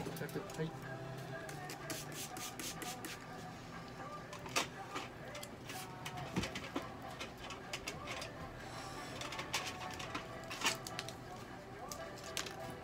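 Hand trigger spray bottle misting a dog's coat: a string of short, sharp spritzes, bunched at the start and again near the end, over soft background music.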